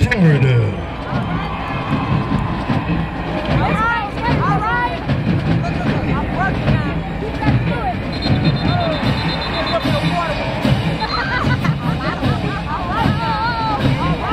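A busy babble of many voices from a stadium crowd and band members, talking and calling out over one another.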